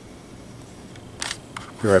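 Handling noise from a video camera being picked up and repositioned: a faint steady hiss with a brief rustle a little over a second in, then a man's voice starting at the very end.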